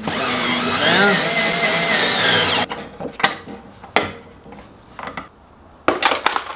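DeWalt cordless screwdriver running for about two and a half seconds, driving a bolt through a metal hinge, its motor whine wavering in pitch as the load changes. It stops suddenly, followed by a few light clicks and knocks.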